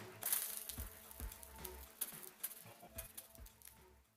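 Faint background music with a few scattered sharp crackles as water drops spit on a very hot electric hot plate.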